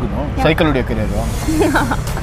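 Conversational speech, with a brief hiss in the second half and a steady low background rumble.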